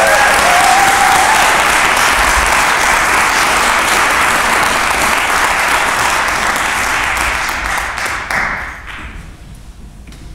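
Audience applauding, with the applause dying away near the end.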